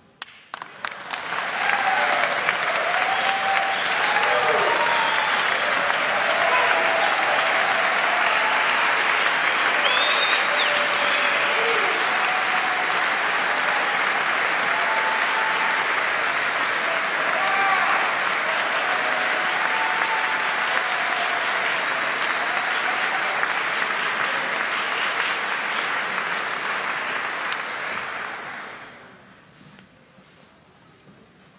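Audience applauding with cheers and whoops. It starts about half a second in, swells to full within a couple of seconds, holds steady, and fades out near the end.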